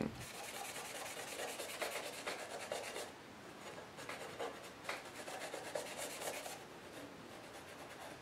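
Faint rubbing and scratching as hands work over a knife's bare steel tang. It is steadier for the first three seconds, then turns quieter with a few short scraping strokes.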